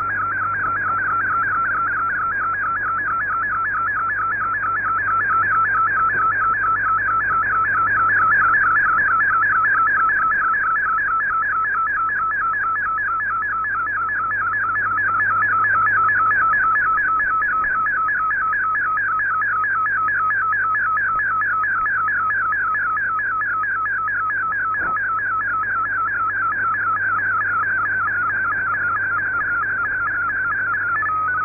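MFSK picture transmission from a shortwave digital broadcast, received on an SDR in sideband mode: one continuous high warbling tone that sweeps rapidly up and down without a break as the image is sent line by line, swelling and fading slightly in level.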